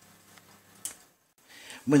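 Near silence: quiet room tone with one faint short click a little under a second in, then a woman's voice begins near the end.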